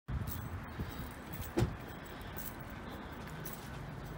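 Steady outdoor background noise with scattered light clicks and a sharper knock about one and a half seconds in.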